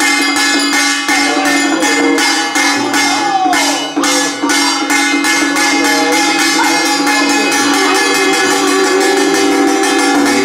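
Taiwanese temple ritual music: a small hand-held ritual drum beaten in a fast, even beat with jingling percussion, under steady sustained tones.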